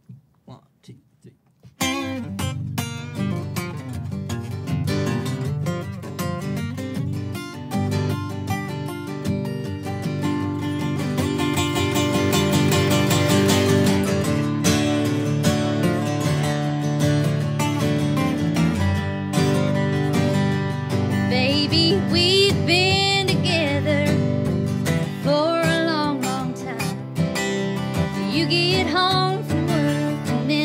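Near silence, then two acoustic guitars start playing together about two seconds in, the intro of a country song. A woman's singing voice comes in with them about twenty seconds in.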